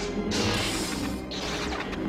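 Lightsaber duel sound effects from the film: two long bursts of crashing, crackling noise, starting about a third of a second in and again just past a second, over the orchestral score.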